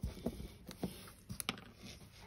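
Light, irregular tapping, about half a dozen soft taps, as a sponge is dabbed to stipple paint onto a flat test panel.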